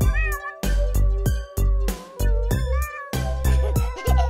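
Cat meows, twice, over a children's-song backing track with a steady beat.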